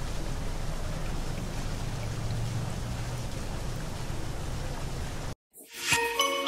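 Steady trickle of a shallow, stony stream. It cuts off suddenly near the end, and a short rising whoosh follows.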